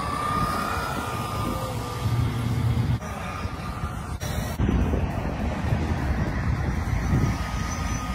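Wind rumbling on the microphone outdoors, with a thin, steady high whine from a small electric motor above it. The sound changes abruptly about four seconds in.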